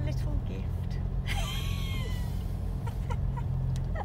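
Steady low rumble of a Renault car driving, heard from inside the cabin, with a brief voice sound that rises and falls in pitch about a second and a half in.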